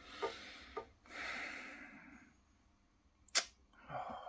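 Quiet, with a soft breathy exhale about a second in, a few faint clicks near the start and one sharper click a little past three seconds.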